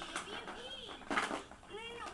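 Toddler making wordless high-pitched babbling sounds, short calls that rise and fall in pitch, with a breathy burst a little after a second in.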